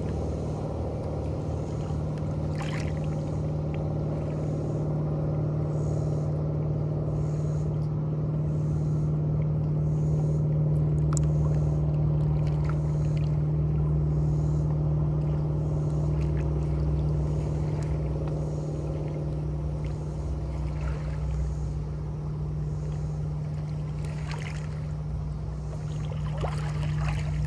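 Steady drone of a distant motorboat engine, swelling a little midway and easing off near the end, over small waves lapping and splashing against shoreline rocks.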